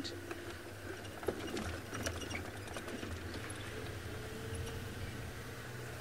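Open safari vehicle driving slowly over a rough dirt track: its engine hums steadily while the body gives off scattered small knocks and rattles.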